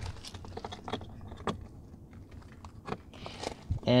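Faint, irregular plastic clicks and handling noise from a small OBD2 scanner dongle being pushed into the diagnostic port under a car's dashboard, the sharpest click about a second and a half in.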